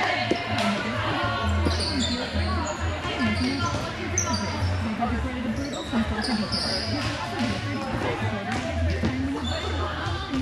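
Volleyball gym ambience in a large echoing hall: players' voices and chatter, a ball bouncing on the hard floor with scattered knocks, and short high squeaks.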